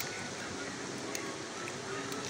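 A hand mixing chicken pieces in a wet yogurt-and-spice marinade in a plastic tub: soft, wet squishing with a few faint ticks, over a steady hiss.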